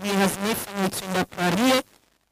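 A woman singing unaccompanied in short phrases, holding notes with a slight waver, then breaking off shortly before the end.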